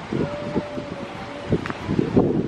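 Wind buffeting the camera microphone outdoors, a gusty, uneven low rumble.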